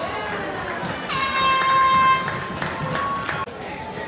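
Air horn sounding one long blast of a bit over two seconds, starting about a second in, the horn used on a football practice field to signal a change of practice period.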